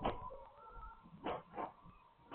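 A dog barking: three short barks, one at the start and two in quick succession a little past the middle.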